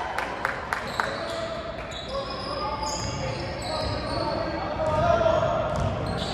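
Basketball being dribbled on a hardwood court, four sharp bounces in the first second, ringing in a large gym, followed by the voices of players and spectators.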